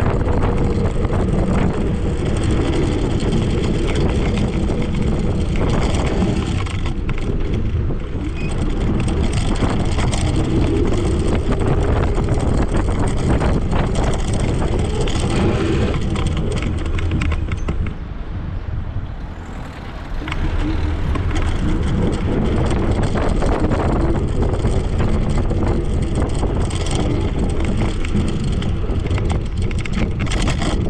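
Steady wind noise on the microphone and tyre rumble from an MS Energy X10 electric scooter riding along the road, briefly quieter about two-thirds of the way through as it slows.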